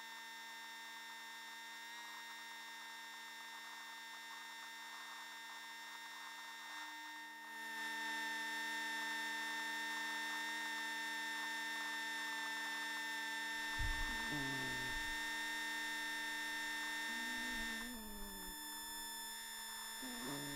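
A steady electrical hum made of many fixed tones, growing louder about seven seconds in and easing back near the end, with a few short sliding low tones in its last third.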